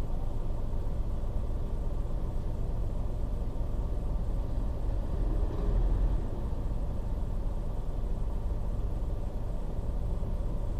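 Steady low rumble of a car's engine and tyres on the road, heard from inside the cabin while driving. It swells briefly about five to six seconds in as a minibus passes close alongside.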